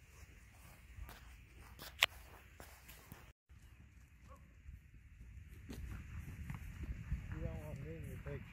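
Faint low rumble of a herd of loose horses trotting and galloping over grass, growing louder in the second half. A single sharp click comes about two seconds in, and a brief wavering call comes near the end.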